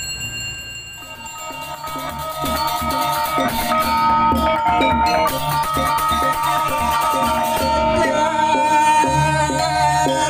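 Balinese gamelan ensemble playing: a kendang hand drum, cengceng cymbals and bronze gong-chimes come in about a second in and keep up a fast, dense interlocking rhythm over ringing metal tones.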